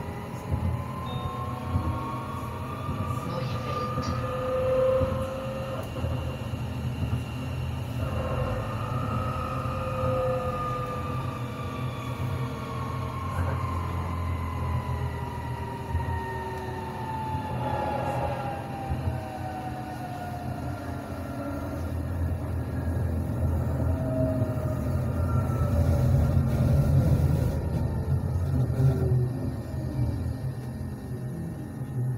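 BLT line 10 tram running along its track: a steady low rumble of wheels on rails, with the electric drive's whine gliding slowly up and down in pitch as the tram gathers and sheds speed. The rumble grows louder near the end.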